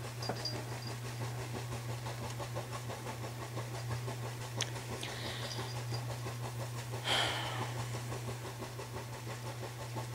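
A steady low hum of background room noise, with one soft breath from the man about seven seconds in.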